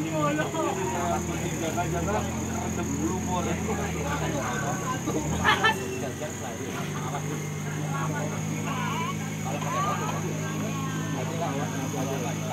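An offroad vehicle's engine idling under overlapping crowd chatter; its pitch sags lower for several seconds in the middle, then comes back. A single sharp click about five and a half seconds in is the loudest sound.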